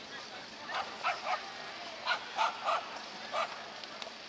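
A dog barking: seven short barks, three about a second in, three more around two seconds in and a last one near the end.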